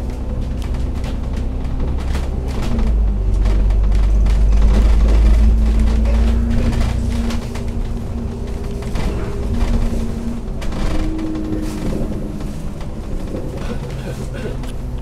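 Citybus double-decker's diesel engine under way, heard from inside on the upper deck: a low drone that grows louder and heavier about three seconds in as the bus accelerates, then eases off after about seven seconds, with frequent rattles from the bus body.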